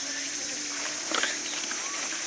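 Insects over the forest keeping up a steady high-pitched drone, with a few faint short chirps mixed in.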